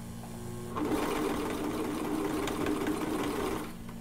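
Brother 2340CV coverstitch machine running at a steady speed for about three seconds, stitching elastic down on stretch fabric. It starts about a second in and stops shortly before the end.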